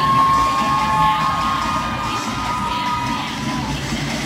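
Spectators cheering with long, high-pitched held screams, several voices sustaining their pitch for about three seconds and dying away near the end, over music playing underneath.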